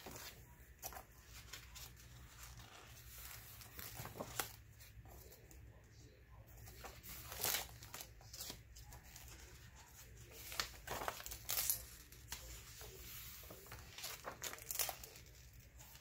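Paper pages of a handmade journal being turned and handled: faint rustling with a few brief, sharper crackles at irregular moments.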